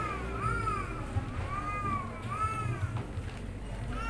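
An animal's short, high calls, about four of them, each rising and then falling in pitch, meow-like.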